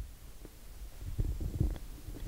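Handling noise from a handheld microphone being moved: faint, irregular low thumps and rumbling that begin about a second in.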